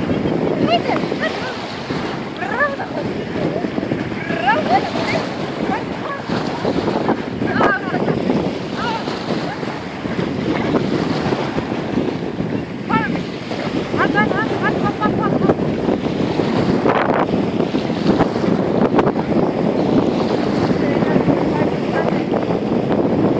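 Small sea waves lapping and splashing, with wind rumbling on the microphone and faint distant voices now and then.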